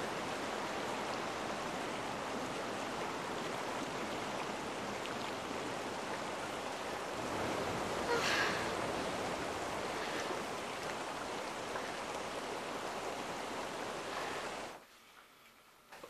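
Steady rush of flowing stream water, cutting off abruptly near the end.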